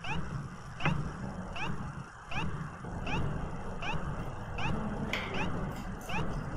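A short, high, rising squeak repeating evenly about every two-thirds of a second, over a faint low murmur.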